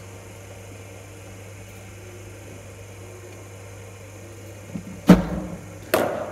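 Steady low hum, then about five seconds in a cricket bowling machine fires a ball with a loud thump. A sharper, quieter knock follows just under a second later as the ball reaches the batsman.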